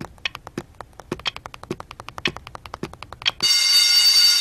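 Rapid, even clock ticking, several ticks a second, broken about three and a half seconds in by an electric school bell that starts ringing loudly and keeps ringing.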